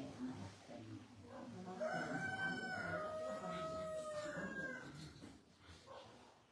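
A rooster crowing once: one long, drawn-out crow that begins about two seconds in, lasts about three seconds and drops slightly in pitch toward its end.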